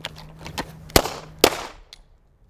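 Two loud semi-automatic pistol shots about half a second apart, the first about a second in, each with a short ringing echo, and a fainter crack just before them.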